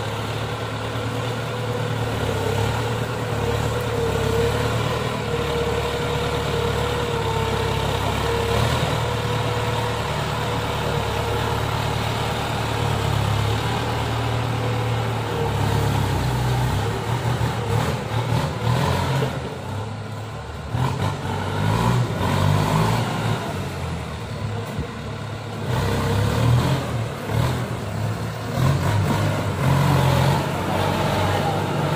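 Kubota M95-series farm tractor's diesel engine running under load as it works a rear rotary tiller through wet mud. The engine note holds steady for the first half, then rises and falls unevenly.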